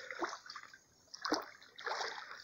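Shallow creek water running faintly, with two brief soft sounds about a quarter second and a second and a quarter in.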